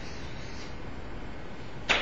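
Chalk writing on a blackboard: faint strokes over a steady room hum, then a sharp chalk stroke or tap near the end.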